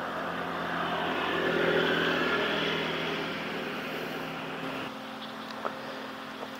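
A motor vehicle passing on a nearby road: its engine and tyre noise swell to a peak about two seconds in, then fade away slowly.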